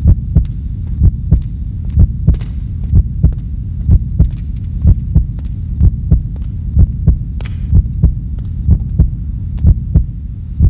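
Heartbeat sound effect: paired low thumps about once a second over a steady low hum, with a faint brief swish about seven and a half seconds in.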